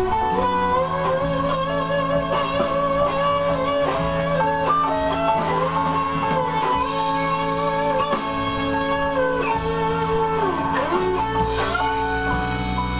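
Live electric blues band playing an instrumental passage: an electric guitar lead with long bent notes, one sliding down near the end, over bass, keyboard and drums keeping a steady cymbal beat.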